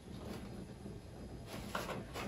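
Quiet room hum with faint hand-handling sounds of a small camera on a flexible tripod, with a few soft clicks about one and a half seconds in.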